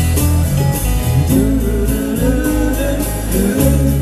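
Live acoustic guitar music with deep bass notes, played through a stadium PA and heard from among the audience.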